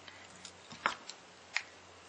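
A few faint, sharp clicks and taps from small objects being handled, about four in two seconds, over quiet room tone.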